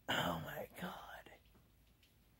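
A man whispering, breathy and mostly unpitched, for about a second and a half.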